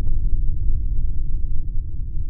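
Deep, steady rumble of a cinematic transition sound effect, with a few faint clicks over it.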